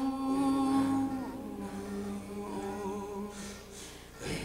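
A man's voice holding long, slow notes in a Persian Kurdish (Kourdi) piece. The held note steps down a little over a second in, wavers in a brief ornament around the middle, and fades near the end.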